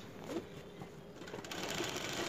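Sewing machine starting to stitch about one and a half seconds in, a fast run of fine ticks that grows louder as it sews the folded hem of a cotton lungi; before that, only faint handling of the cloth.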